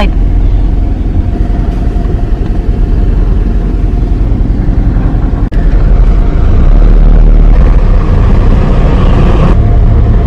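A car's engine and tyre noise heard from inside the cabin as it drives slowly forward: a steady low rumble that gets a little louder about two-thirds of the way through.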